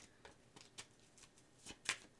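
Tarot cards being shuffled and handled: a few faint, scattered soft clicks and flicks, the clearest near the end.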